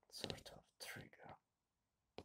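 A man whispering close to the microphone: two short whispered phrases, each about half a second long.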